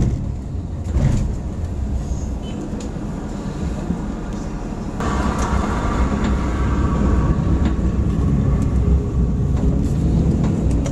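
Moving car's road and engine noise, a steady low rumble. About halfway through it grows louder and a higher hum joins for a few seconds.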